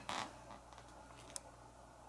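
Quiet room tone that opens with a short breathy hiss. After it come a few faint small clicks, the sharpest about one and a half seconds in.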